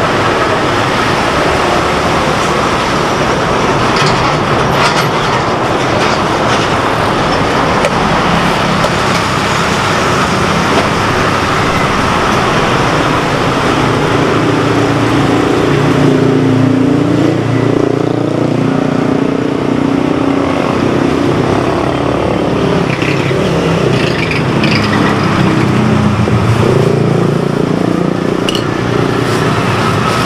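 Steady, loud road-traffic noise, with heavier vehicle engines passing through the middle and later part.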